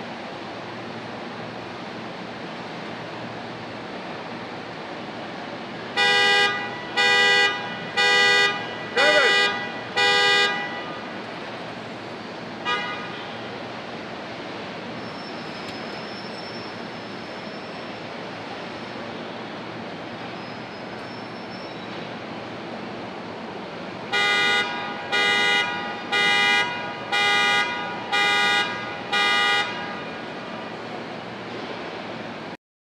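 Car horn sounded in short blasts about a second apart: five, then a brief one, then six more near the end, over the steady hum of an assembly plant.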